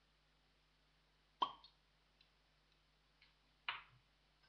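Two sharp taps about two seconds apart, the first with a brief ring, with a few faint ticks between them, over a faint steady hum.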